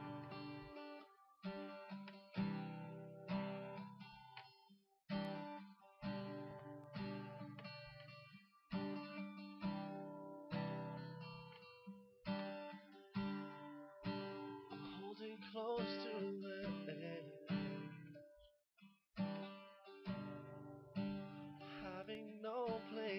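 Steel-string acoustic guitar strummed in a slow intro: a chord struck about once a second and left to ring out, with two brief breaks.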